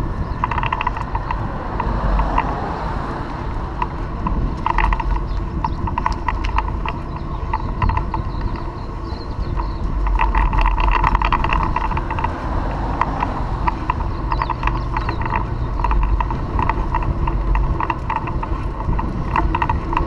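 Wind rumbling on a moving camera's microphone, with a busy, irregular clicking and rattling over it.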